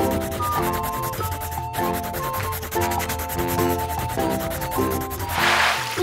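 Instrumental background music: a repeating melody of short, evenly spaced notes over a fast, hissy ticking beat. Near the end it swells into a hiss, a transition whoosh.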